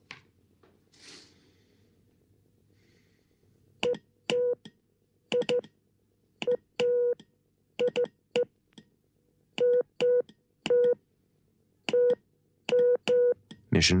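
Morse code being sent: a single steady-pitched beep keyed in short and long pulses with gaps between them, starting about four seconds in.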